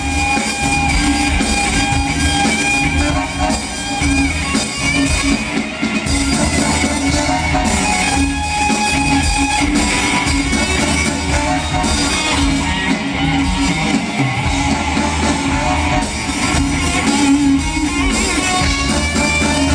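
Live band music with an electric guitar playing lead in a rock style, held notes ringing over the band's drums.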